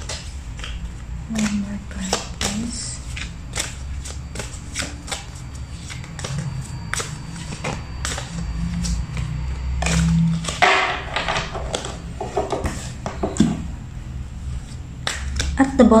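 A deck of Power Thought affirmation cards being shuffled by hand: a run of quick, irregular card clicks and snaps, with a low murmured voice about two-thirds of the way through.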